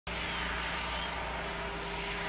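Steady low engine hum under an even hiss of outdoor background noise.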